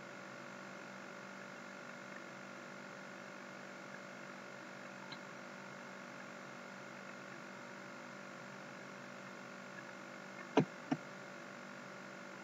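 Low room tone with a steady faint electrical hum, and two short clicks about ten and a half seconds in.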